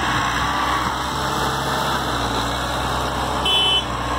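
A tractor engine running steadily. A brief high-pitched beep sounds near the end.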